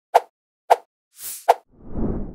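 Animated-graphics sound effects: three short pops, the second and third further apart, with a brief hissing whoosh just before the third pop and a soft low swell rising near the end.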